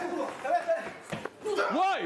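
Men's voices shouting and calling over one another in a scuffle, with a couple of brief knocks about a second in.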